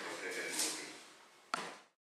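A voice speaking briefly in a meeting room, trailing off about half a second in. Then one sharp knock about one and a half seconds in, just before the sound cuts off.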